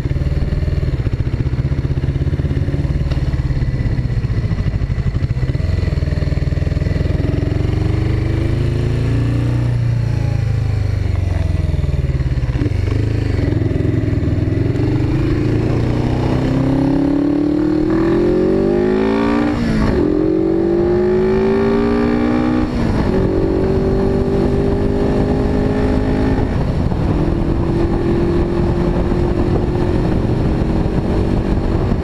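Suzuki GS500E's air-cooled parallel-twin engine pulling away at low revs, then accelerating hard with its pitch climbing. Two upshifts drop the revs past the middle, and it settles to a steady cruise for the last several seconds.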